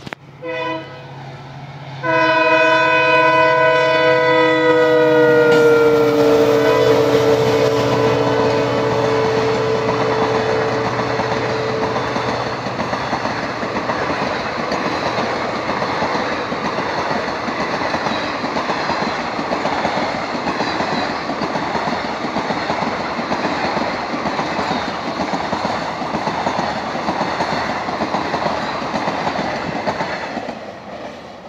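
Passenger train's locomotive horn giving two short blasts, then one long blast of about ten seconds whose pitch drops as the locomotive passes. After it, the steady rumble and clickety-clack of the coaches' wheels on the rails as the train runs by.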